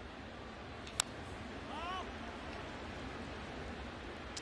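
One sharp crack of a wooden baseball bat fouling off a fastball about a second in, over the steady murmur of a ballpark crowd.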